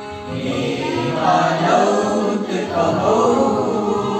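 A group of children and teenagers singing a song together, their voices swelling louder about a second in.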